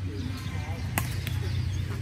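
A badminton racket strikes a shuttlecock once, a sharp crack about a second in, with fainter ticks around it, over a steady low background hum.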